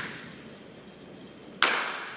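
Two sharp snaps from a group of martial-arts students moving in unison through a form, a small one at the start and a much louder one about one and a half seconds in, each dying away in a short echo off the gym walls.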